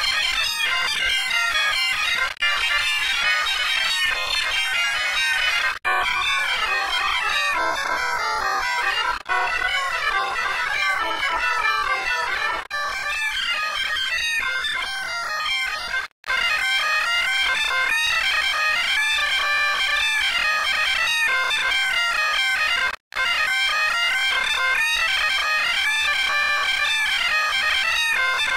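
Harsh, distorted music-like audio made of several pitch-shifted copies of the same clip stacked into a chord, the usual 'G Major' meme edit. The sound drops out for an instant a few times, twice fully in the second half.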